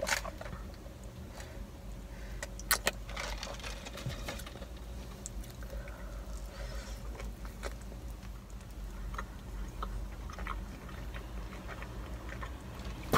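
Close-up eating sounds: sipping soda through a straw, then biting into and chewing a burger, with small sharp mouth clicks and crackles, a couple louder ones about three seconds in. A low steady hum runs underneath in the car cabin.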